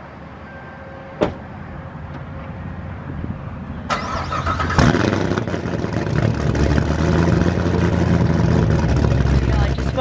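Hennessey HPE1000 Corvette ZR1's supercharged V8 being started. There is a click about a second in, then cranking about four seconds in. The engine catches with a loud burst just before five seconds and keeps running loudly through the exhausts.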